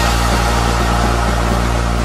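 A car engine running steadily, a low drone with a hiss over it, laid into an electronic dance track while the beat drops out.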